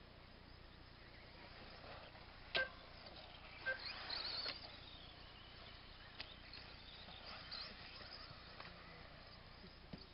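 Faint outdoor background with a sharp click about two and a half seconds in, a few softer clicks, and brief high chirps.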